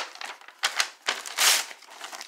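Plastic packaging rustling and crinkling in short bursts as hands pull at it, the loudest burst about one and a half seconds in.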